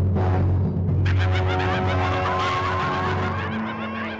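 Cartoon soundtrack: a low, steady drone under sustained music, joined about a second in by a rapid, wavering, high-pitched cackle from a monster voice effect.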